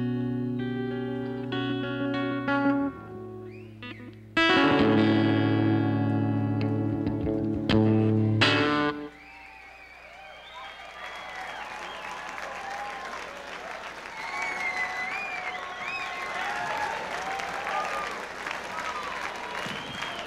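Live rock band ending a ballad on long held electric guitar chords, with drum and cymbal hits under the last, loudest chord, which cuts off about nine seconds in. Then the crowd applauds and cheers, with whistles.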